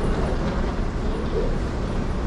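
Steady low rumble of vehicle noise, with brief snatches of people's voices.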